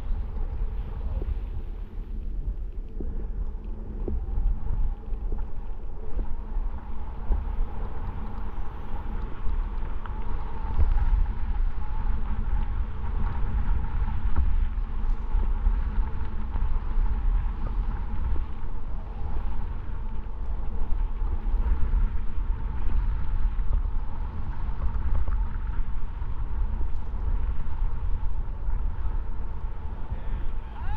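Wind buffeting a helmet-mounted camera's microphone during a snowboard descent: a loud, steady, deep rumble with a rushing hiss on top.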